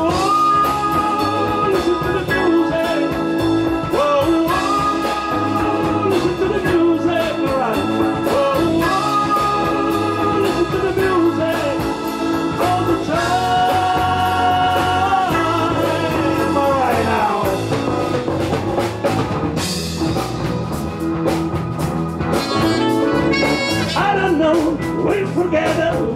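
Live band playing a slow blues-rock number: drum kit, electric guitar and bass under a lead melody of long held notes that slide up into pitch.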